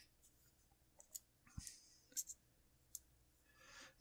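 A few faint, short metallic clicks, irregularly spaced, as the magnetic stainless-steel button caps of a fidget spinner are fitted back onto its bearing; otherwise near silence.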